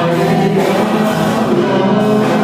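Church congregation singing a gospel worship song together, loud and steady, with many voices at once.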